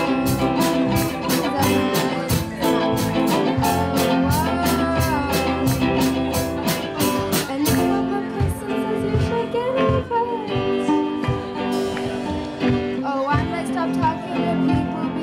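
Live band playing a pop-rock song: drum kit, electric bass, electric guitar and ukulele behind a young female lead vocal. A steady cymbal beat of about four strokes a second drops out about eight seconds in, leaving a sparser passage.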